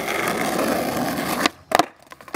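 Skateboard wheels rolling on asphalt, a steady rumble. About a second and a half in the rumble stops abruptly, and a few sharp clacks of the board hitting the pavement follow as a varial kickflip attempt is bailed.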